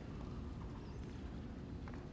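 Steady low rumbling background noise of an indoor sports hall, with a faint click near the end.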